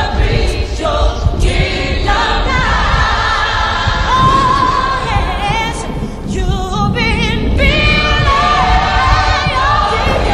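A choir singing over music, the voices held and wavering with vibrato, in a gospel-like style.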